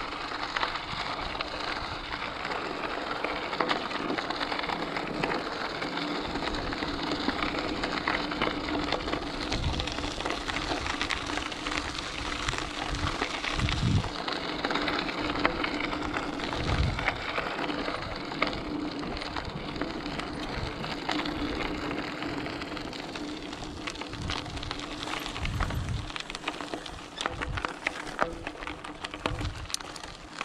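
Mountain bike tyres crunching and crackling over loose gravel at riding speed, with a steady low hum and a few low thumps.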